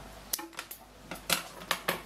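Light, sharp clicks and taps from handling plastic aquarium airline tubing and fittings at a glass tank: one click about a third of a second in, then three quick ones close together near the end.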